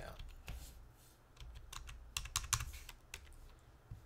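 Computer keyboard being typed on: a quick run of key clicks about two seconds in, entering a figure into a spreadsheet cell.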